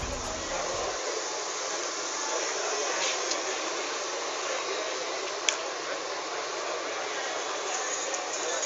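Steady, hiss-like background noise of a gathered outdoor crowd, with no clear words and one sharp click about five and a half seconds in. The tail of intro music dies away in the first second.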